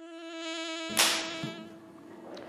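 A steady, insect-like buzzing tone that swells in loudness, cut by one sharp, loud hit about a second in; the buzz carries on faintly after it.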